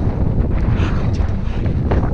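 Strong wind buffeting the camera microphone: a loud, steady, low rumble, with a few faint clicks in the second half.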